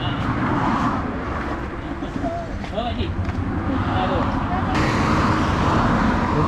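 Road traffic: cars going by on a road, with indistinct voices of people around.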